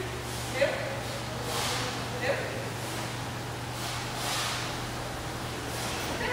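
Quiet room tone with a steady low hum, broken by two short voice sounds, about half a second and two seconds in, and a few soft, noisy swells.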